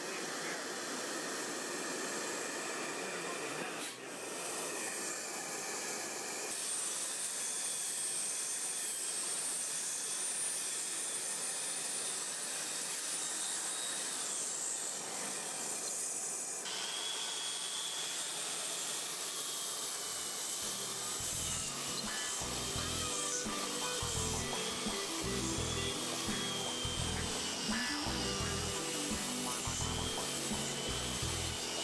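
Hand-held angle grinder with a diamond cup wheel under a dust shroud grinding cured repair mortar flush with a concrete floor: a steady high whine over rough grinding noise, changing abruptly a few times. Background music with a low beat comes in about two-thirds of the way through.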